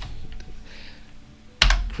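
Computer keyboard keys tapped as a short command ('EOF') is typed and Enter is pressed, soft keystrokes with a sharper, louder one near the end.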